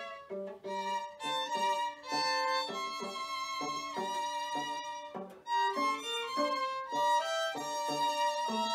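String trio of bowed violins playing together in short, separate notes and chords, with a brief break about five seconds in before the playing picks up again.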